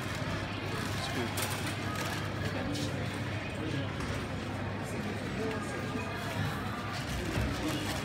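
Busy supermarket ambience: indistinct chatter of shoppers in a checkout queue with music playing in the store, over a steady low hum.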